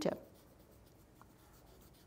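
Faint, soft rubbing of a cotton swab (Q-tip) working over soft pastel on paper, blending the colour.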